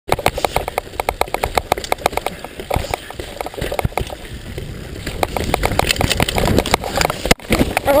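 Helmet-mounted camera on a mountain bike descending a rough dirt trail: a steady rattle of quick clicks and knocks from the bike over bumps, with tyre and wind noise. Near the end there is a sudden loud hit as the rider crashes, and a shout of "Oh" begins.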